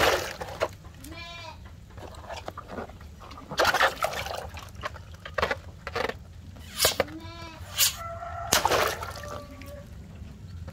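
Water balloons being pierced with a fork and bursting, several sharp pops each followed by a splash of water into a tub. An animal calls twice in the background.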